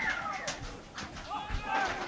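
Shouted calls from rugby league players on the field during a tackle, with a low thud about a second and a half in.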